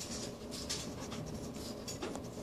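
A pug snuffling and nosing at a beetle in the carpet pile: an irregular run of short, scratchy rustles and sniffs.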